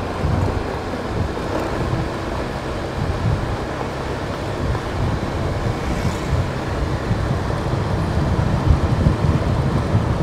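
Wind buffeting the microphone while moving along a road, a loud, uneven low rumble with the hiss of travel over it.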